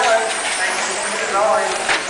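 Voices talking over a steady background hiss, with one sharp click just before the end.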